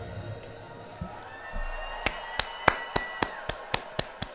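Hands clapping in a quick steady rhythm, about three claps a second, starting about halfway through. Music fades out in the first second.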